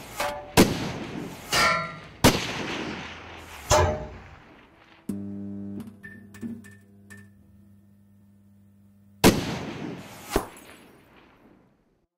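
Outro sound design: a series of sharp, echoing booms, a held low chord, then two more booms near the end that die away.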